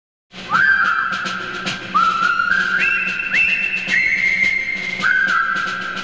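A whistled tune starts about half a second in: a string of held notes, each one swooping up into its pitch, over a low steady hum.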